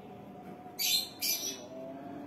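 Ballpoint pen writing on a workbook page: two short scratchy strokes about a second in.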